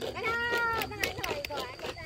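A short, high-pitched, drawn-out shout from a player about half a second in, falling slightly at its end, with scattered short knocks of play on the pitch.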